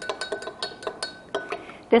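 A metal spoon clinking quickly and unevenly against a glass measuring cup while stirring orange juice and heavy cream together, with the glass ringing faintly between strikes. The clinks stop about a second and a half in.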